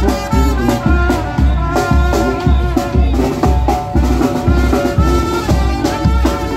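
Mexican street brass band playing while marching: a sousaphone bass line pulsing about twice a second under trumpets, with drum and cymbal beats.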